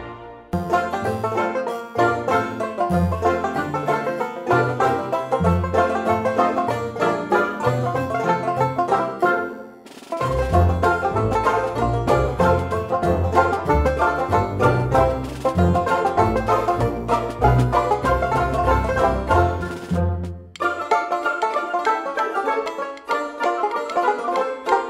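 Background instrumental music: fast plucked-string picking, banjo-like, over a bass line, dropping out briefly about ten seconds in and again around twenty seconds.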